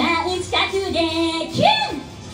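A woman singing live into a handheld microphone over backing music, her voice gliding up and back down near the end.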